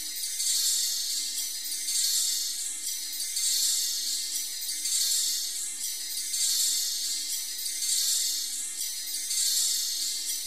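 High, hissy jingling texture from the Virtual ANS 3 spectral synthesizer app playing a "spring jingle" patch. It swells and fades in a repeating pulse about every one and a half seconds.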